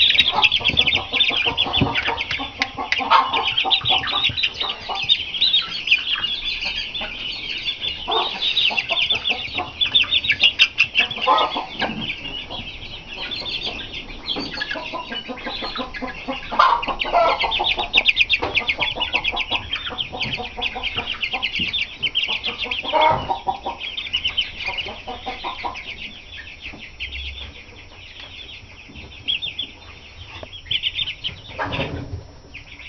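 A brood of young Shamo gamefowl chicks peeping continuously in quick, high-pitched chirps, with louder, lower calls breaking in every few seconds.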